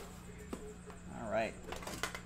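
Light clicks and taps of a metal trading-card tin from an Upper Deck The Cup hockey box as it is handled and its lid is lifted. A brief murmured voice sound comes just past the middle.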